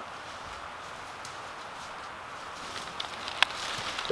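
Steady low hiss of outdoor background with a few light clicks and ticks near the end, one sharper than the rest.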